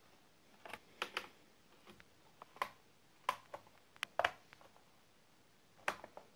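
Irregular sharp clicks and light taps, about eight over a few seconds, from a small screwdriver and hands working on a laptop's plastic bottom panel as its screws are taken out.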